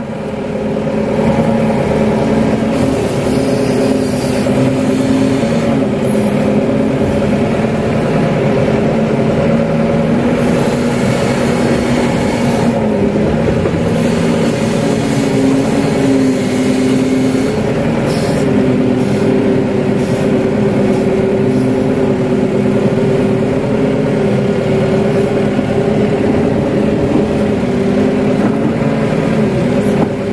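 Kato HD512 crawler excavator's diesel engine running steadily under working load, heard from the operator's seat as the boom and bucket dig and lift wet mud, its note shifting a little as the hydraulics are worked.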